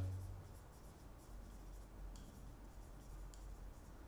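A marker writing on a whiteboard: faint, scattered strokes of the felt tip across the board.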